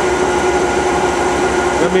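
Home-built nine-coil generator rig running with no load: a steady mechanical whir with a constant humming tone.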